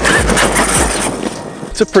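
Arrma Kraton 6S RC monster truck pulling away across loose dirt and gravel, its tyres crunching and throwing up grit in a dense rushing noise that eases off near the end.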